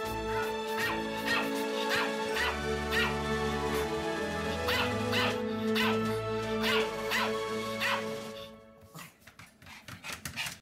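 Background music with a small dog, a Pomeranian, yapping repeatedly about twice a second. The music fades out near the end.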